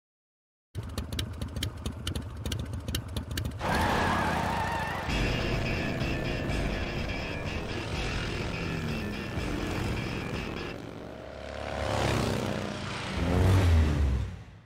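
Motorcycle V-twin engine in a studio logo's sound design: a fast, even pulsing idle for the first few seconds, then a louder engine note with rising revs over synth music, swelling to its loudest just before the end.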